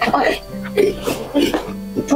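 A person coughing in several short, irregular fits over sustained background music.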